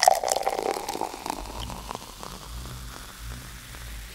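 Carbonated lager fizzing and crackling in a glass as the foam head settles, loudest at first and fading away. A faint low steady hum sits underneath in the second half.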